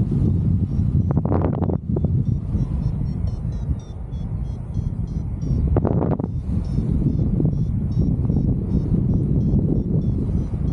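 Airflow rushing over the camera microphone under a paraglider in flight, with two stronger gusts of buffeting, about a second in and around six seconds. Faint, rapid high beeps typical of a variometer signalling lift run through much of it.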